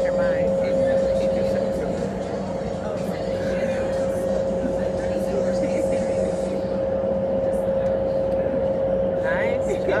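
Indoor skydiving vertical wind tunnel running at flight speed: a steady rush of air with a constant hum from its fans.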